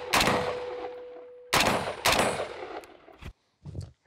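Two shots from an AR-15 rifle fitted with a muzzle brake, about a second and a half apart, each with a long echo off the range. A faint steady ringing tone follows the first shot, and a few light clicks come near the end.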